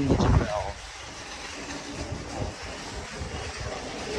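Flip-flop footsteps on a concrete floor with phone handling knocks, over a steady low rumble.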